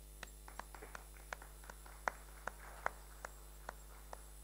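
Faint sharp clicks at irregular intervals, about a dozen, over a steady low electrical hum.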